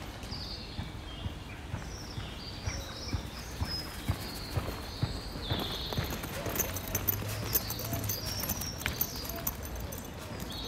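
Outdoor street ambience with small birds chirping and singing. In the second half there is a run of sharp knocks, about two a second, with a low wavering call underneath near the end.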